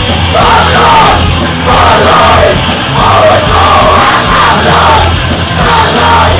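Live punk rock band playing loud, with distorted guitar, bass and drums under hoarse shouted vocals that come in short phrases about a second long, starting about half a second in.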